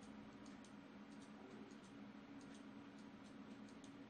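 Near silence: a low steady room hum with faint, irregular clicks of a computer mouse.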